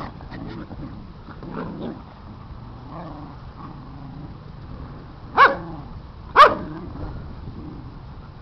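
Dogs play-wrestling: low growling through the first half, then two loud barks about a second apart, a little past the middle.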